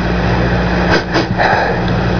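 Steady electrical hum and hiss of an old radio recording, with faint indistinct sounds about a second in.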